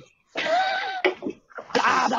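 A person coughing once, a short rough burst lasting about half a second, with talk starting again near the end.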